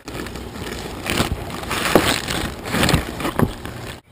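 Steady rushing noise with a low rumble, broken by sharp knocks about a second in, near two seconds, and twice near the end.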